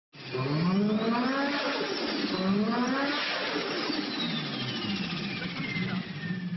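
Car engine revving hard, its pitch climbing twice as through upshifts and then falling away. A high turbo whistle slides slowly down in pitch through the second half.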